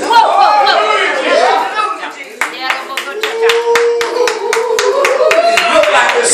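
Hands clapping in a steady rhythm that starts about two seconds in, under a man's amplified voice preaching in a sing-song way and holding one long note in the second half.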